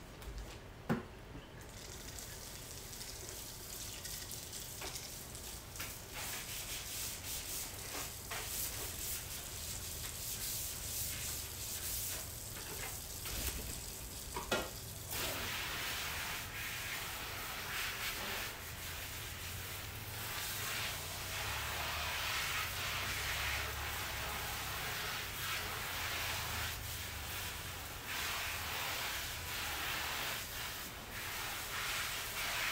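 Kitchen tap running into a sink while a basin is rinsed out, with a few knocks of the basin against the sink; the water gets louder about halfway through.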